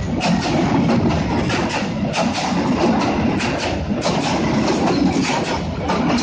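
Passenger train coaches passing close by: a loud, steady rumble with the wheels clicking over rail joints, often in pairs, a few times a second.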